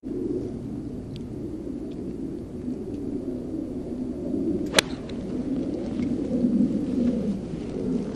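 A golf club striking the ball: a single sharp click nearly five seconds in, over a steady low rumble of wind on the microphone.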